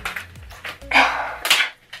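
Disposable gloves being pulled on and stretched over the hands: short crackles, a longer rustle about a second in, then a sharp snap about a second and a half in.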